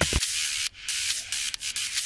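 A hiss, mostly high-pitched, with a few brief dropouts, in a break between sections of an electronic dance track.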